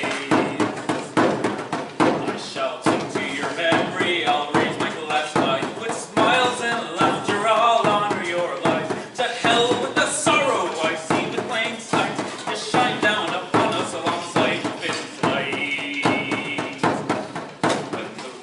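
Bodhrán frame drum beaten with a tipper in a steady driving rhythm, with a man's singing voice over it.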